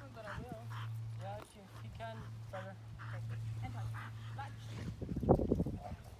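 A Boxer dog whining in short, wavering pitched calls over a steady low hum, then a cluster of sharp, louder bark-like outbursts about five seconds in.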